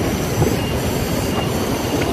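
Steady rush of a fast-flowing river running over rocks, an even wash of noise.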